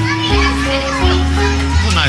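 Carousel ride music: a fairground tune with a bass line stepping from note to note under held chords.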